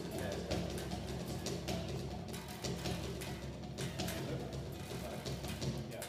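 A band warming up: drums and bass with other instruments playing, fairly quiet and steady.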